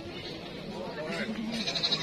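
A goat bleating, with people talking in the background.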